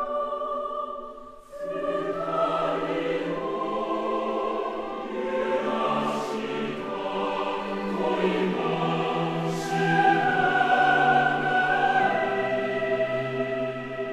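Boys' choir singing a slow classical choral piece in sustained chords. The sound dips briefly just after a second in, then comes back fuller as lower voices join, and it swells louder in the second half.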